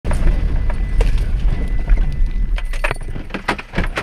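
A vehicle driving on a rough dirt road, heard from inside the cabin: a low rumble with repeated rattling and clattering from the bumps. The rumble eases off after about three seconds, while the rattles go on.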